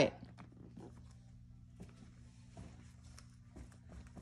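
Faint, soft footfalls and shuffles of a child dancing on carpet, with a few light knocks scattered through, over a steady low hum.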